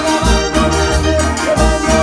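Live Latin dance band playing: an organ-like keyboard line over a bass line that changes note about every half second, with congas and other percussion keeping the beat.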